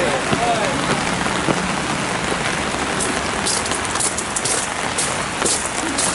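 Steady rain falling, with a run of crisp crunching footsteps on gravel starting about halfway through, roughly two steps a second.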